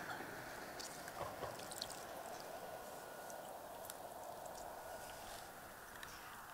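Faint, steady shoreline ambience of shallow water washing over seaweed-covered rocks at low tide, with scattered small ticks and drips.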